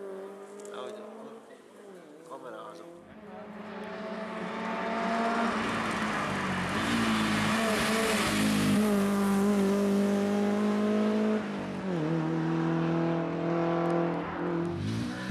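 BMW E36 Compact rally car accelerating hard toward and past the listener, its engine loud and climbing in pitch. The pitch drops sharply at two gear changes, then climbs again.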